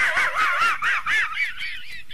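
Muttley, the Hanna-Barbera cartoon dog, snickering: his wheezy, rapid chuckle, a quick run of rising-and-falling squeaks about five a second that eases off a little toward the end.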